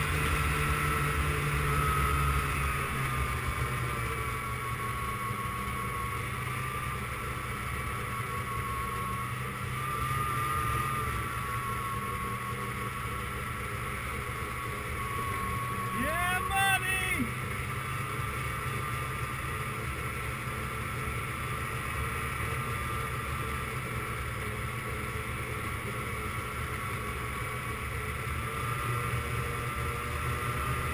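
Sled sliding fast over a packed-snow trail: a steady rumbling scrape of the sled on snow throughout. A brief shout about halfway through.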